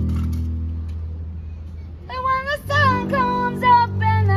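Acoustic jazz-blues band with upright bass and piano playing a held low passage between sung lines; a woman's singing voice comes back in about two seconds in.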